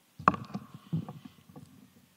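A sharp knock about a quarter second in with a short ringing after it, then a few softer thumps about a second in, like bumps and handling noise picked up by a microphone.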